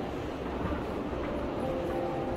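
Steady background din of a large indoor exhibition hall: a continuous low rumble with a few faint held tones drifting over it.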